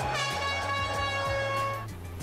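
A single loud horn tone, held steady for nearly two seconds and cutting off abruptly, over low background music.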